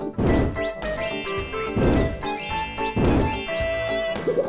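A short, bright musical jingle with chiming, bell-like notes. Its phrase is heard twice, each time opening with a rush of noise.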